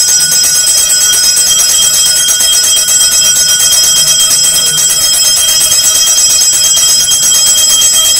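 Temple bells ringing rapidly and without pause during aarti, the lamp offering to the deity; a loud, bright, fast-pulsing ringing that starts abruptly.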